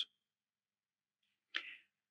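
Near silence in a pause of a man's reading, with one brief faint sound about a second and a half in.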